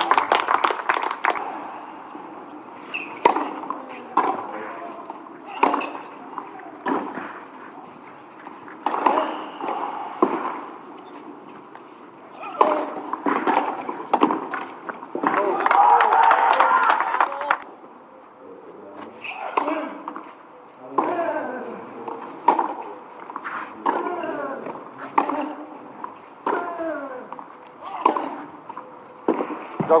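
Tennis rallies on a clay court: a racket hits the ball sharply again and again, roughly a second or so apart, in runs broken by short pauses between points. Voices sound between and during the rallies.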